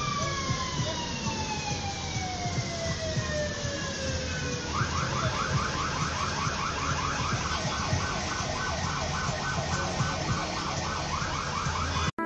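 Vehicle siren in street traffic: a long wail that slides slowly down in pitch, then switches about five seconds in to a rapid up-and-down yelp, over a steady low traffic rumble.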